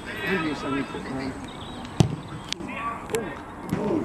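A football struck hard once for a set-piece delivery: a single sharp thud about two seconds in, amid shouting voices.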